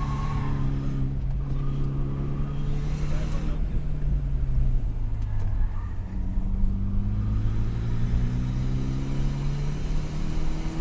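Car engine heard from inside the cabin while being driven on a race track, over a constant road rumble. The engine holds a steady note, drops in pitch about halfway through as the car slows, then rises steadily as it accelerates again.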